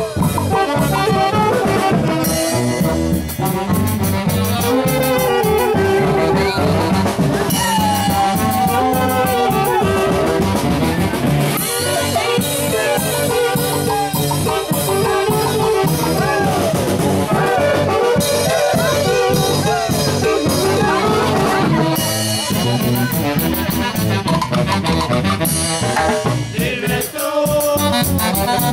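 Live band of saxophones over a drum kit playing a lively huaylas dance tune, the melody lines gliding and a steady beat running without a break.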